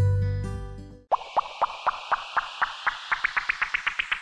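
Music fades out in the first second. After a brief gap comes a string of short rising blips over a hiss, coming faster and climbing higher in pitch as they go: an electronic transition sound effect.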